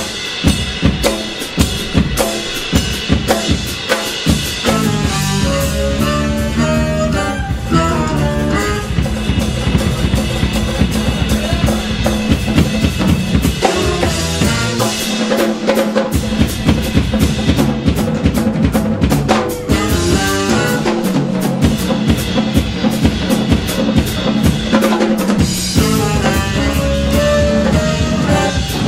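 Jazz-fusion band playing live, with the drum kit to the fore: busy snare, rimshots and bass drum over bass and melody lines.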